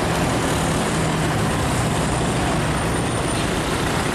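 Steady roadside traffic noise from vehicles passing close by, with a low engine hum underneath.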